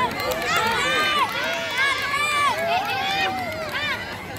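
Many children's voices shouting and cheering over one another, high-pitched and unbroken, with some long held shouts, as a team strains on a tug-of-war rope.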